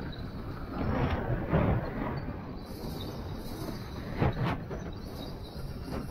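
Skis sliding over groomed, corduroy snow in a steady rumble, with two louder scraping swooshes as the edges bite into turns, a long one about a second in and a short, sharp one about four seconds in.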